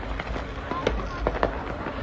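Fireworks firecrackers going off in a few sharp pops, over crowd chatter.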